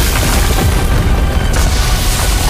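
Animated battle explosion sound effect: a loud, continuous blast with a heavy low rumble and debris noise, over background score.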